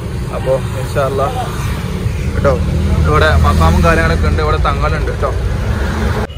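A man talking in Malayalam over a steady low rumble that swells in the middle and fades again.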